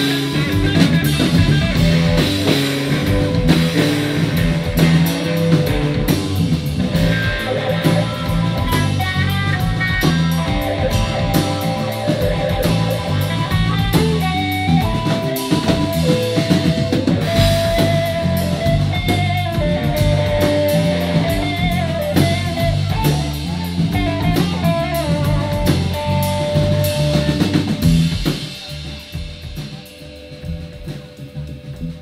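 Live rock trio of electric guitar, bass guitar and drum kit playing. The electric guitar plays a shifting melodic line over a steady bass and drum groove. About two seconds before the end the band drops back sharply, leaving a quieter held note.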